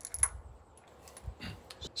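A few light metallic clicks and clinks from a Ruger Super Redhawk revolver being handled and picked up off the bench, the sharpest about a quarter second in and a few softer ones later.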